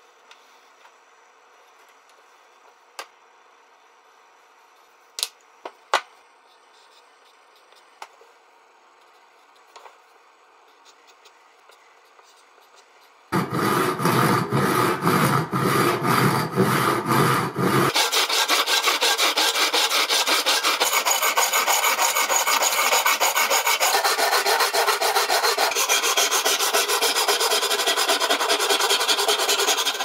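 A hand saw cutting through a block of purpleheart wood clamped in a vise, in fast, steady back-and-forth strokes that start about 13 seconds in. Before that it is quiet apart from a few light clicks.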